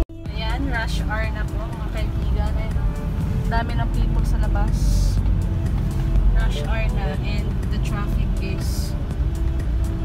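Steady low rumble of a car's engine and road noise heard from inside the cabin, with indistinct voices and music over it.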